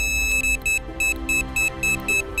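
Fox Mini Micron X carp bite alarm sounding: a held high beep tone that breaks, about half a second in, into a run of short quick beeps, about five a second, the alarm signalling line being pulled over its roller wheel, a bite. Music plays underneath.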